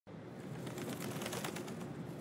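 Quiet outdoor background with birds calling.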